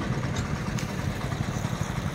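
Road traffic: a steady low engine rumble of vehicles idling and running past.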